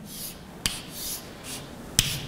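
Chalk writing on a blackboard: short scratchy strokes, with a sharp tap of the chalk against the board about two-thirds of a second in and another near the end.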